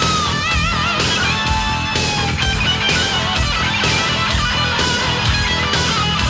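Hard rock instrumental passage. A distorted electric guitar plays a lead line with wide vibrato on its held notes, then sustained and sliding notes, over a steady drum beat and bass.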